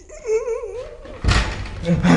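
A high, wavering whining cry whose pitch quivers, lasting about a second. A sudden loud, breathy burst follows a little after the cry ends.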